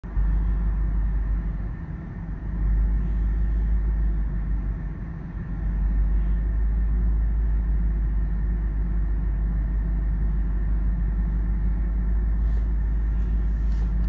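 Steady low rumble of a car on the move, heard from inside the cabin, with two brief dips in level early on.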